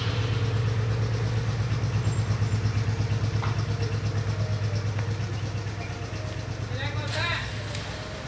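A vehicle engine idling steadily, with a fast, even pulsing. A voice is heard briefly near the end.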